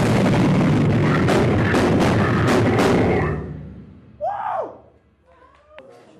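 Heavy metal music with a drum kit and cymbals playing loudly, stopping about three seconds in. About a second later comes a short cry with a falling pitch, then quiet.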